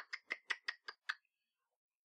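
Light clicking at a computer: a quick, even run of about seven small clicks that stops a little over a second in.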